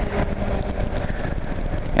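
Kawasaki KLR 650's single-cylinder engine running steadily while the motorcycle cruises at low speed, with road and wind noise.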